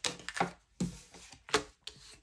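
A deck of tarot cards being handled over a wooden tabletop: about five short, sharp card taps and slaps, with quiet between them.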